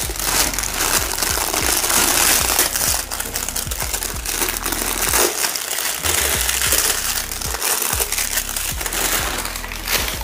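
Thin clear plastic wrapping crinkling and crackling continuously as it is peeled off a new stainless-steel pressure cooker and crumpled up by hand.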